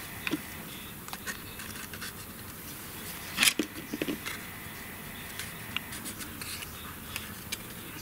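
Cardstock being handled and pressed together by hand: faint scattered rustles, scrapes and small clicks, with a couple of sharper clicks about three and a half and four seconds in.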